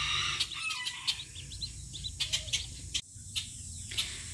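A group of Welsh Harlequin ducklings peeping in short, scattered chirps, with a few faint clicks among them.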